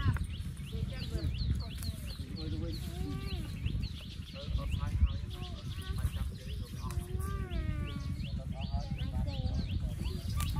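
A group of people talking, under a bird calling in a rapid series of short, high, falling chirps. A low, uneven rumble of wind on the microphone runs beneath.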